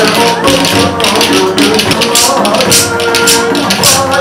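Folk dance music with wooden spoons clacked together in time by the dancers, sharp clicks landing a couple of times a second over a sustained melody.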